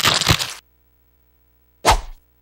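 Cartoon sound effect of a hand-cranked meat grinder crunching and grinding for about half a second, then silence. A short, sharp crack comes near the end.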